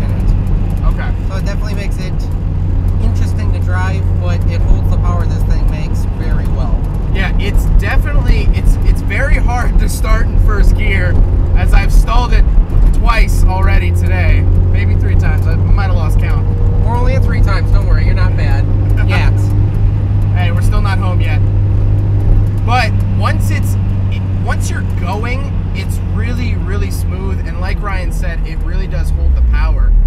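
In-cabin drone of a turbocharged 1995 Mazda Miata's 1.8-litre inline-four cruising at a steady speed, with voices over it. The engine note drops near the end.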